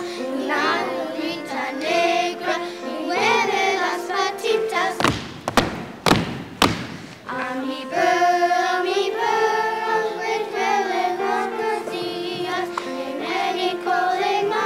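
Children's choir singing. About five seconds in the singing stops for a couple of seconds of a few sharp thumps, then the singing picks up again.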